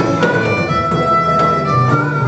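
Live band music: a harmonica holds a long high note over strummed acoustic guitars, with a few sharp percussion strikes.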